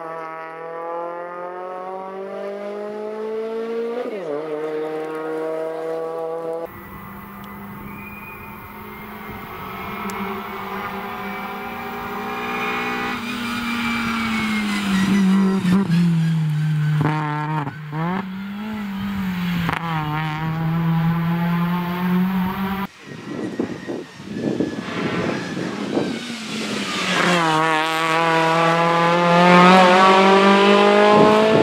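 KIA Picanto rally car's small petrol engine revving hard under full throttle, its pitch climbing through the gears and dropping at each upshift and when the driver lifts off. The sound jumps at several cuts between passes, and the engine climbs again near the end as the car accelerates toward the camera.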